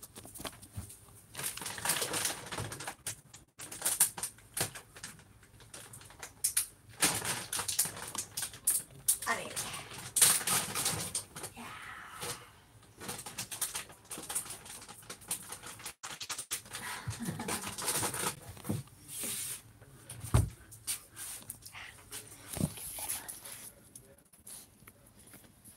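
Dogs panting in irregular bursts, with a faint voice at times.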